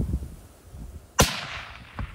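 A single rifle shot from a Gunwerks rifle chambered in 28 Nosler, about a second in: one sharp crack followed by an echo that fades away over most of a second.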